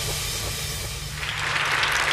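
The end of a TV segment jingle, with a low bass tone held underneath, and a studio audience starting to applaud about a second in.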